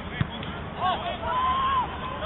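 Football players shouting to each other across the pitch, with one long drawn-out call in the middle. A single dull thump of a football being kicked comes just after the start.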